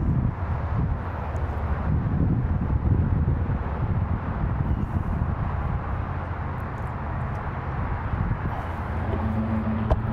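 Steady outdoor background noise, a continuous low rumble with no distinct events.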